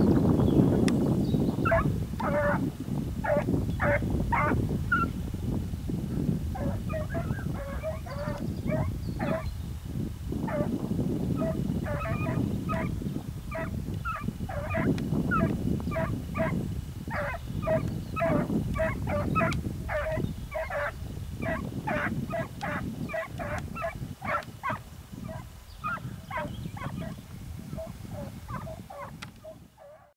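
A pack of hare-hunting hounds baying in the distance, a fast, irregular run of short barks as they work a hare's scent trail. The barking thins out and fades near the end.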